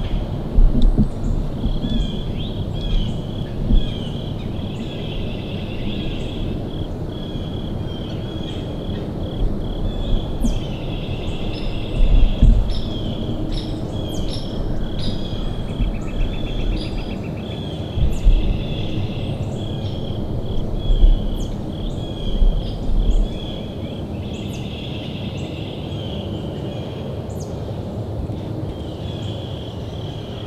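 Outdoor ambience at a woodland field edge: a steady, high, pulsing chirping chorus with short high calls scattered through it. Low rumbling bumps on the microphone come and go, loudest at several moments in the first three quarters.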